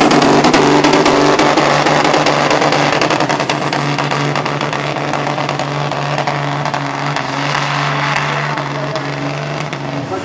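Caterpillar C-15 inline-six diesel in a 1978 Peterbilt pulling a sled at full throttle, held at a steady pitch against its rev limiter. The engine gradually fades as the truck moves away down the track.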